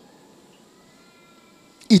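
A faint, high-pitched, drawn-out cry, rising slightly over about a second, in a near-quiet hall; a man's amplified voice comes in near the end.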